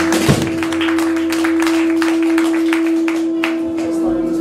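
Live band music with electric guitars: one long held note sustains throughout, over a steady run of sharp percussive hits.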